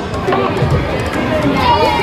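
Background voices mixed with music, one voice standing out near the end.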